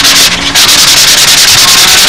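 Light hand sanding on a doped model airplane wing, a steady scratchy hiss.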